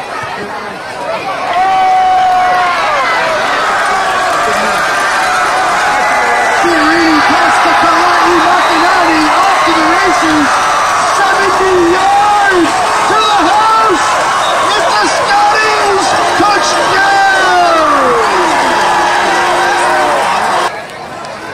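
Football crowd cheering and yelling for a touchdown run, many voices shouting at once; it swells about a second and a half in and stays loud.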